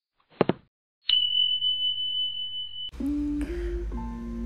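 Subscribe-button sound effect: a quick double click, then a bright bell ding that rings on as one steady high tone for nearly two seconds. Music starts near the end.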